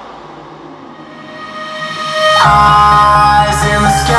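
Music playing through a JBL Xtreme 2 portable Bluetooth speaker: a quieter passage builds up, then about two and a half seconds in the full track comes in much louder, with a heavy bass line.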